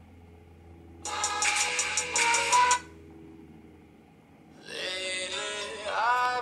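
Music playing from a Nexus 5's speaker, skipped from track to track with the volume rocker. One song plays for about two seconds and cuts off, and after a short pause another song starts near the end.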